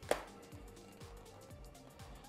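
A single sharp plastic click right at the start as a ski boot's lower buckle is pressed shut with a thumb, followed by faint background music.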